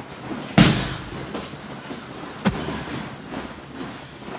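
Boxing glove punches landing. There is a sharp smack about half a second in, the loudest, and another at about two and a half seconds, with fainter knocks between.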